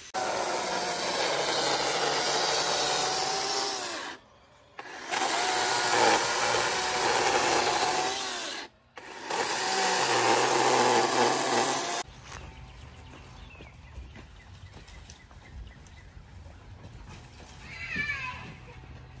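Cordless electric chainsaw running and cutting through shrub stems and trunks, its motor whine dipping and recovering under load. It stops briefly twice, then stops for good about twelve seconds in, leaving only quiet background.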